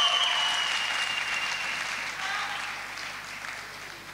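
Audience applauding, loudest at first and gradually dying away, with a few voices cheering over it in the first couple of seconds.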